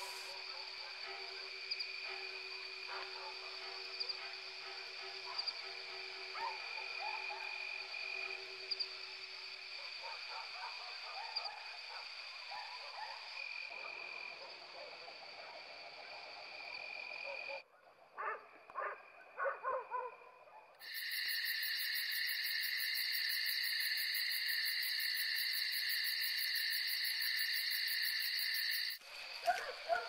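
Steady high-pitched night animal calls with scattered fainter calls. About 18 seconds in come a few louder, shorter calls. Then a louder, even, fast trilling sound starts abruptly and cuts off about a second before the end.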